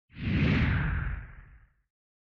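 A single produced whoosh sound effect with a deep rumble underneath, the kind used for a logo reveal. It swells quickly and fades away after about a second and a half.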